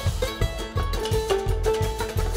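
Live string band playing an instrumental passage: banjo and mandolin picking over upright bass, with drums and hand percussion keeping a steady beat.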